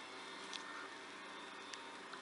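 Faint steady background hiss with no words, broken by two light ticks, one about half a second in and one near the end.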